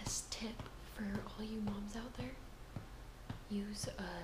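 A woman whispering and speaking softly.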